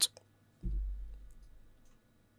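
A single low thump about half a second in that fades away over about a second, with a few faint clicks around it.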